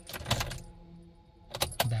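Ignition key being turned off and then back on: a few sharp clicks and keys jangling on the key ring, with a faint hum in the pause between.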